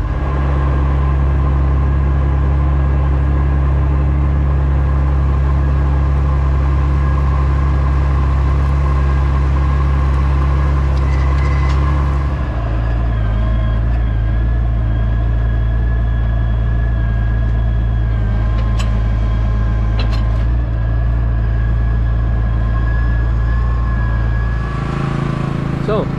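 Massey Ferguson 3690 tractor engine heard from inside the cab, running steadily under load while pulling a six-furrow wagon plough. About halfway through, the engine note shifts slightly lower.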